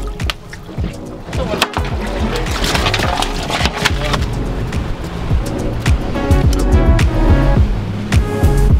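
Background music with a steady beat and a deep bass line.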